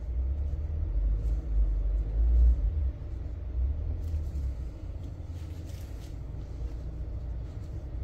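A low rumble that swells over the first three seconds and then settles to a steady lower level, with a few faint light clicks.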